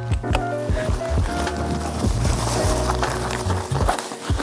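Background music with sustained notes over a steady held bass line.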